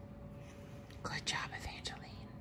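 Soft whispered speech, about a second long, starting about a second in, over quiet room tone.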